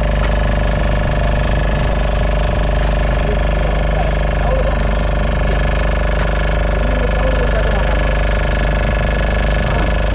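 Fishing boat's engine running steadily, a loud, even drone with a fast, regular knock.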